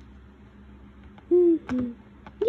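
A child's voice making two short hummed notes, the second lower than the first, about a second and a half in.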